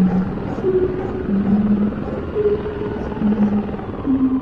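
A person's rough, throaty growling, imitating a ravenous animal tearing into food, with a few short low notes held among the noise.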